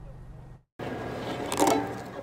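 A low steady hum that cuts out about half a second in, followed by rustling as the velvet cover is lifted off a violin lying in its case.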